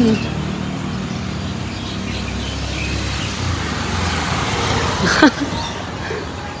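Steady low rumble of road traffic that swells slightly and then eases, with a short sound falling steeply in pitch about five seconds in.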